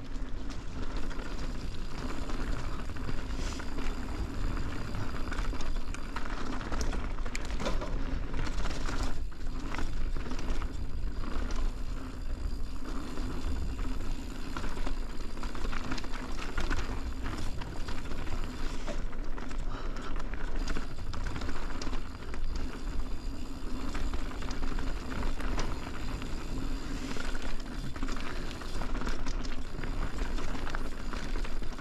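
Mountain bike ridden fast down a dirt forest singletrack: steady tyre noise on dirt and leaves, with frequent small knocks and rattles from the bike over bumps, and a deep wind rumble on the camera microphone.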